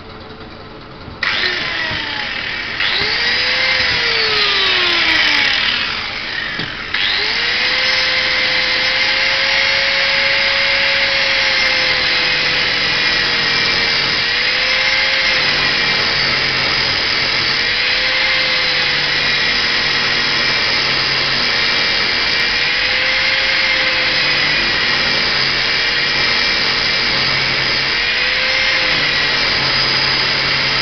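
Pillar drill spinning a rubber bung while an angle grinder's abrasive wheel grinds it to a taper. The drill motor starts about a second in; the grinder starts, winds down briefly, then restarts and runs steadily, its pitch dipping every few seconds as the wheel is pressed into the rubber.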